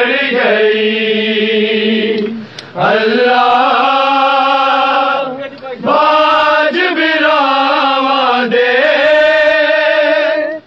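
Male voices chanting a noha, a Shia lament, unaccompanied, in long held melodic phrases. The chant breaks off briefly about two and a half seconds in and again about five and a half seconds in.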